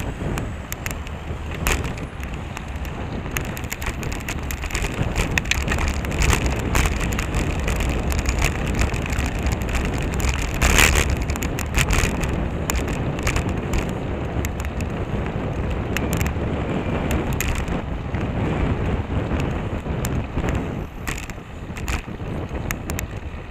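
Wind buffeting the microphone of a camera mounted on a moving bicycle, with a steady low rumble and many short clicks and knocks, the loudest about eleven seconds in.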